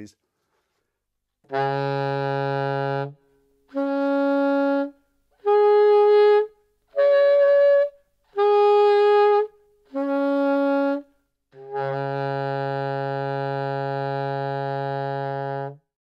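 Alto saxophone held on the low B-flat fingering, overblown to sound its harmonic series. Seven separate notes step up from the low fundamental through the octave and the twelfth to the double octave, then come back down, ending on a long held low note.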